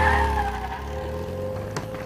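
Yellow Volkswagen Beetle pulling away with a short tyre squeal that falls in pitch over well under a second. Its engine rumble then fades off into the distance. Film score music plays underneath.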